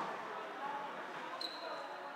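Sports-hall ambience during a floorball game: faint, echoing calls from players and light clatter of sticks and ball on the court. A short high-pitched tone starts sharply about one and a half seconds in.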